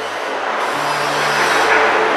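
A rising whoosh transition effect: a rushing noise swells steadily louder over sustained low music notes.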